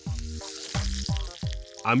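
Pork joint searing in hot fat in a pan: a steady, gentle sizzle that is not spitting. Background music with held notes plays underneath.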